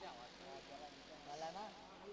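Faint voices talking in the background.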